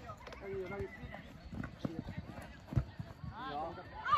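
Players' voices calling out across a football pitch during play, with a few dull thuds, the loudest near three seconds in.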